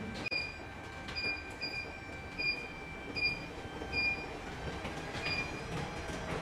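Treadmill console beeping as its speed buttons are pressed to make the belt go faster: about seven short, high, single-pitched beeps at uneven intervals, over the steady running of the treadmill belt and motor.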